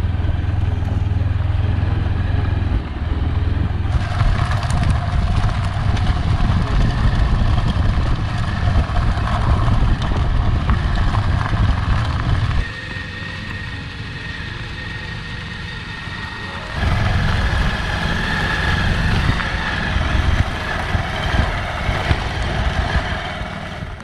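Motorcycle engine and road noise heard from the rider's seat while riding, a steady low rumble that drops noticeably for a few seconds past the middle before picking up again.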